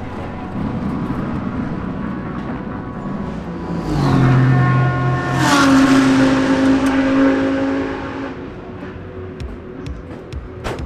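GT3 race car engine in a pit lane, held at a steady low speed. It swells about four seconds in, its note dips slightly as it comes closest, then fades after about eight seconds, as a car passing through the pit lane would sound.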